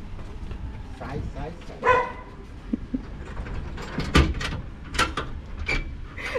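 A dog barks from behind the gate about two seconds in. Two sharp knocks follow, about four and five seconds in, as the metal gate is unlatched and pulled open.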